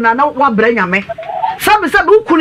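A woman talking animatedly; only speech, with one drawn-out, falling vowel about halfway through.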